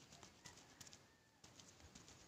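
Near silence, with faint scattered small clicks.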